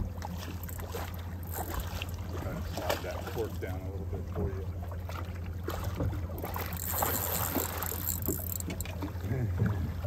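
Boat's outboard motor idling with a low steady hum, with faint voices in the middle.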